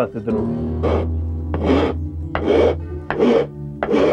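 A steel blade scraping along the carved wooden neck of a çiftelia in about five repeated strokes, the first about a second in, shaping and smoothing the wood. Steady background music plays underneath.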